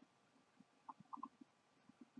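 Near silence: room tone, with a few faint short blips about a second in.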